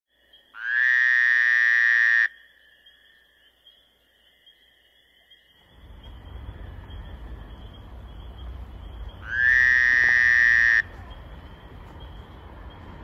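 Two loud buzzing tones, each about a second and a half long, each starting with a quick upward slide; a low rumble, like wind on the microphone, comes in about six seconds in and runs under the second tone.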